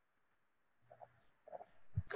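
Near silence for about the first second, then two faint, short hums of a person's voice.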